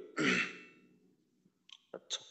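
A man clearing his throat once, about a quarter second in, followed near the end by a few faint mouth clicks.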